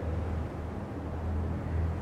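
Steady low hum with faint hiss: the room's background sound, with no other event.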